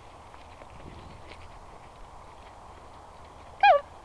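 Faint footsteps crunching on a dirt and gravel track over a low outdoor hiss, then a high, sing-song call of "come" near the end.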